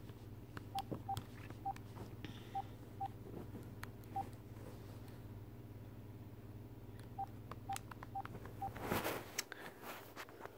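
Phone keypad tones as a number is dialled: about ten short, faint beeps in two runs, with a pause of about three seconds between them. A brief rustle of handling noise comes near the end.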